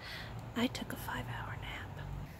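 A woman speaking quietly in a whisper, close to the microphone.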